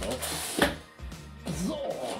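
Background music, with rustling and one sharp knock about half a second in as a cardboard shipping box and its contents are handled.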